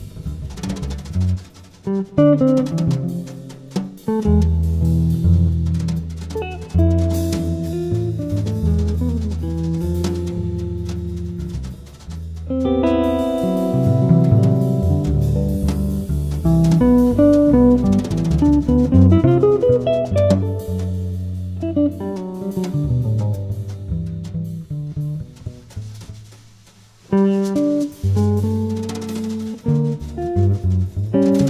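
Live small-group jazz: a guitar plays over a walking bass line and a drum kit. The music drops away briefly about three seconds before the end, then comes back in.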